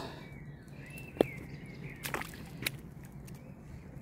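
A few scuffing footsteps on rock, with one sharp click about a second in.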